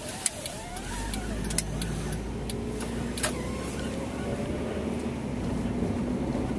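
Car engine and road noise heard from inside the cabin while driving. The low rumble strengthens about a second in and the engine note rises slowly as the car gathers speed, with a few sharp clicks over it.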